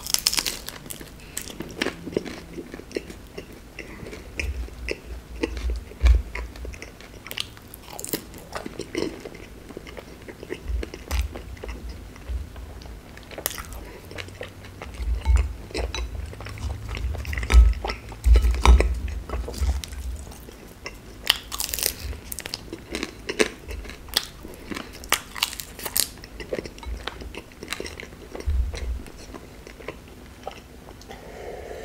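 Close-up eating of small fried chebureki, crisp pastry turnovers with a cherry-jam filling: crunchy bites and chewing, with sharp crackles of the fried crust throughout.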